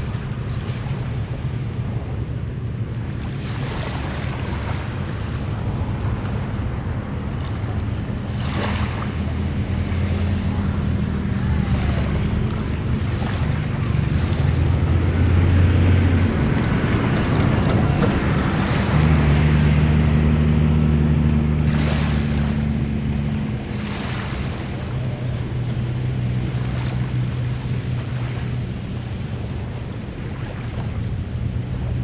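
Low drone of a boat engine out on the water, its pitch stepping up and down a few times and loudest in the middle, over small waves washing in and wind on the microphone.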